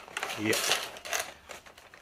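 Hands rummaging through a cardboard box of packed parts: rustling packaging and light clicks and clatter, busiest in the first half and thinning out toward the end.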